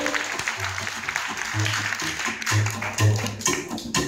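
Gypsy jazz band playing live: plucked double bass notes under acoustic guitar rhythm chords, with the chord strokes becoming sharper and more regular in the second half.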